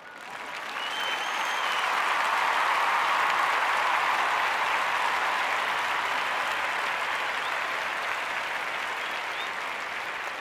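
Crowd applause with a couple of whistles, swelling up over the first two seconds and then slowly fading: a dubbed-in applause sound effect.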